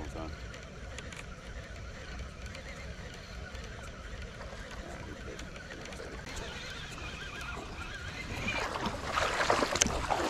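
Low wind rumble on the microphone with a few faint clicks. Then, from about two-thirds of the way in, a loud splashing rush of feet wading through shallow river water.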